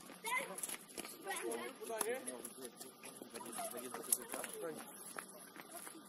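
Footballers' voices shouting and calling across an outdoor pitch, heard from a distance, with a couple of sharp knocks about two and four seconds in.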